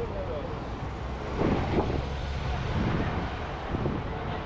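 Wind rumbling steadily on a handheld action camera's microphone outdoors, with indistinct voices of people nearby about a second and a half in.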